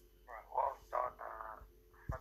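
A person's voice coming through a phone's speaker, thin and narrow-sounding, talking from about a third of a second in until shortly before the end.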